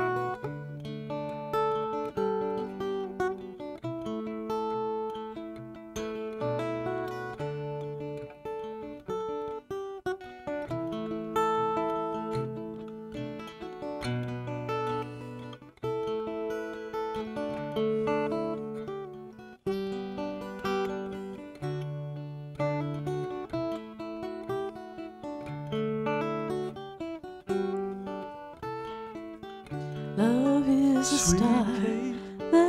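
Solo acoustic guitar playing an instrumental passage of a folk song: plucked notes that ring and fade in a repeating pattern, with no singing.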